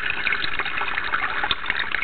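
AP (acid peroxide) solution being poured from the tank into a paper coffee filter in a percolator filter basket: a steady splashing pour of liquid.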